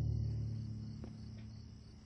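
A low, sustained note of film-score music fading away, over crickets chirping steadily.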